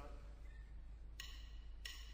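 Quiet lead-in of a live band recording made with a spaced pair of microphones: a steady low hum and room noise, with a faint drumstick click with a short ring about a second in, the count-in before the band starts.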